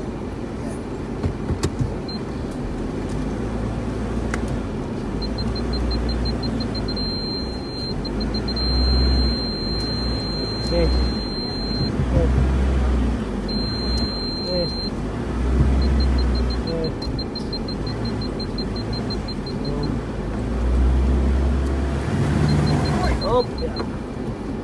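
Car engine running while reversing slowly on a dirt track, heard inside the cabin, its low rumble swelling now and then. A high-pitched parking-sensor beep sounds in quick pips that run together into a continuous tone twice midway, as the car backs close to the roadside brush.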